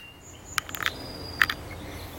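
Quiet outdoor ambience with a few brief, thin, high-pitched chirps and a few light clicks.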